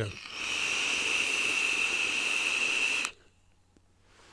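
Draw through a Smok TF sub-ohm tank with a mesh coil, airflow about a third closed and firing at around 60 watts, on a direct-to-lung inhale: a steady airflow hiss with a high whistling tone for about three seconds that cuts off sharply. A faint exhale begins right at the end.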